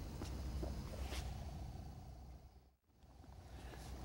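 Faint hangar room tone with a steady low hum and a couple of faint ticks. The sound fades and cuts out entirely for a moment just before three seconds in, then returns.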